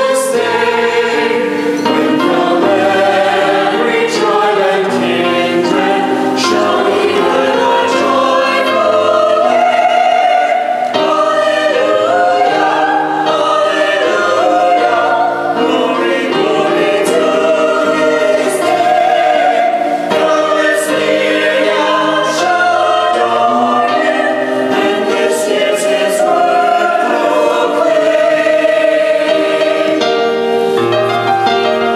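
Mixed church choir of men's and women's voices singing together in harmony, steadily throughout.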